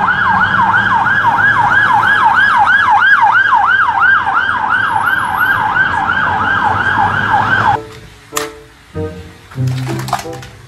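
Police van siren on a fast yelp, its pitch sweeping up and down about three to four times a second over a low traffic rumble; it cuts off suddenly near the end.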